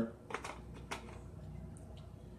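Three faint clicks in the first second, from a plastic bottle of spring water being handled for a drink, over quiet room tone.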